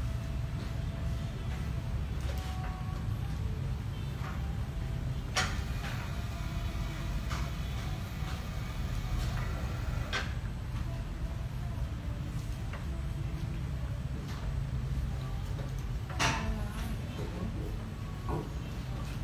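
Sharp clacks from a segmented treatment table worked by a hand lever, three louder ones about five seconds apart, the last the loudest, over a steady low hum.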